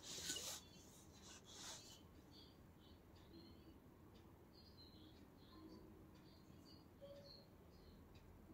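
A spiral-bound sketchbook shifted on a tabletop: a short rustling scrape of paper and card, and a second, softer one about a second later. After that it is near silence, with only faint, scattered high chirps.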